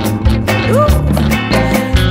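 Studio recording of a blues band playing: a steady drum beat under a full bass line and guitar, with a short upward slide in the melody line a little under a second in.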